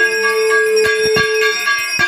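Brass puja hand bell (ghanta) ringing continuously as it is shaken during an aarti, its clapper striking irregularly.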